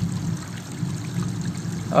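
Steady low background hum with a faint hiss during a pause in speech; a voice starts again right at the end.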